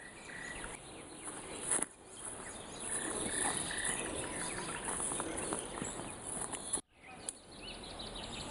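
Summer meadow ambience: insects chirping over a steady crackling rustle, with a few short high chirps about three seconds in. The sound drops out briefly near the end.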